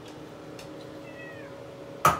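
A domestic cat meows once, a short high call that falls in pitch, about a second in. A steady hum runs underneath.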